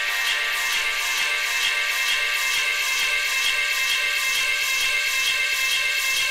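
Electronic dance music from a breakbeat DJ mix played off vinyl: sustained synth tones over a steady beat of regularly repeating crisp high ticks.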